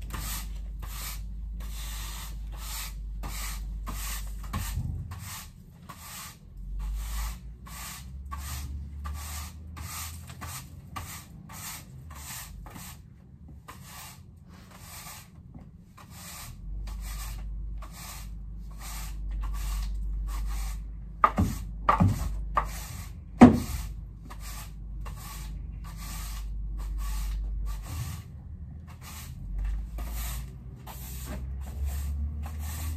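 Footsteps at a steady walking pace, about two crunching steps a second, with a few louder knocks a little past the middle.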